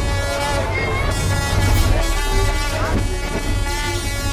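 Vehicle horns sounding in long held blasts over a steady engine hum, with crowd voices mixed in.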